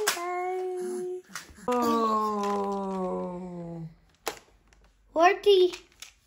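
Voices in long drawn-out, sing-song vowels: one held tone, then a longer one sliding down in pitch, and a short wavering, rising call near the end.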